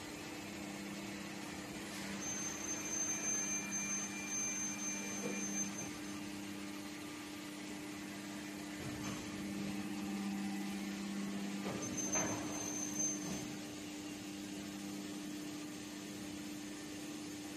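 Mitsubishi 1050-ton plastic injection molding machine running: a steady hum, joined twice by a lower drone and a faint high whine that swell for several seconds each as the machine works through its cycle, with a brief rattle during the second swell.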